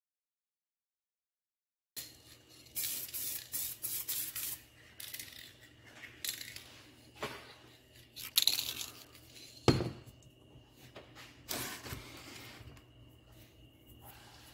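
Aerosol spray-paint can hissing in a string of short bursts, a second or so each, as paint is laid onto a plastic prop housing. There is a sharp knock about ten seconds in. The first two seconds are silent.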